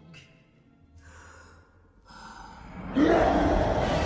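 Film soundtrack: a hushed, tense stretch with faint breaths and a few light, high tones, then about three seconds in a sudden loud swell of music and rushing sound.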